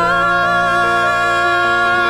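A slow ballad performance playing: a singer holds one long, steady sung note while the accompaniment's lower notes change underneath.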